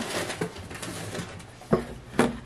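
Rustling and handling noise as someone reaches behind and rummages for an item, with a light knock about half a second in and a brief low murmur of voice near the end.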